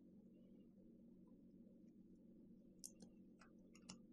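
Near silence: room tone with a low steady hum, and a few faint small clicks in the second half from the plastic cap of a plug-in air freshener refill bottle being worked off.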